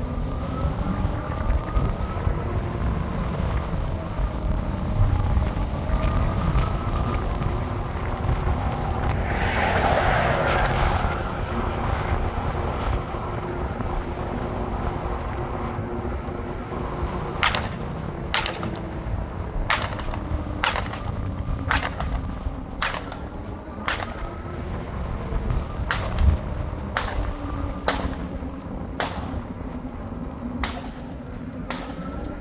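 Wind rumble on the microphone and road noise from a moving e-bike, with a faint wavering whine from its motor. A rushing swell rises and falls about ten seconds in, and in the second half there is a string of sharp, irregular clicks.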